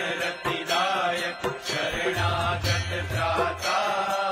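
Devotional mantra chanting sung over music, with a steady beat of sharp percussion strikes; a low sustained tone joins about halfway through.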